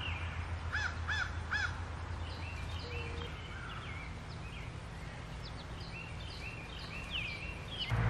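Birds calling: three short rising-and-falling notes in quick succession about a second in, then scattered higher chirps.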